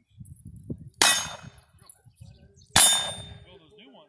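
Two loud metallic clangs about a second and three-quarters apart, each ringing out briefly with a bright tone, like struck steel.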